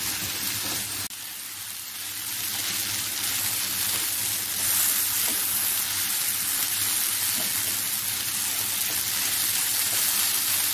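Sliced radish, onion and tomato sizzling in oil in a frying pan as they are stirred with a wooden spatula. The steady hiss breaks off briefly about a second in, then grows louder over the next few seconds.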